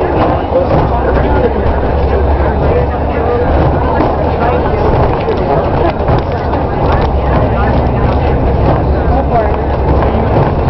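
Steady engine and road rumble heard inside a moving bus, with indistinct chatter from passengers over it.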